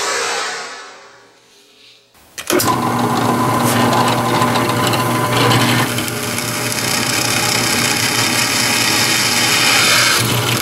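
Drill press running steadily and drilling into a steel strip, cutting metal chips. It starts about two and a half seconds in, after a short noise that fades away.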